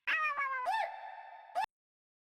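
A short sample auditioned in a music production program: a pitched, meow-like call that slides down in pitch and fades, with a brief bend just before it cuts off abruptly about a second and a half in.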